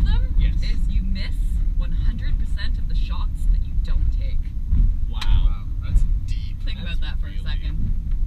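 Steady low engine and road rumble inside a moving truck's cab, with voices over it.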